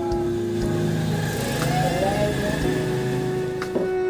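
Background music with steady held notes, with a motor vehicle passing in the middle and a voice heard briefly.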